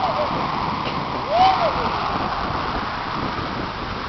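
Steady rush of wind outdoors, blowing over the microphone, with one short voice call that rises and falls in pitch about a second and a half in.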